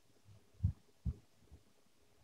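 A few faint low thumps: two clear ones about half a second apart, then a weaker third.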